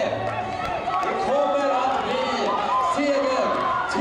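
Indistinct talking: voices speaking without clear words, at a steady level.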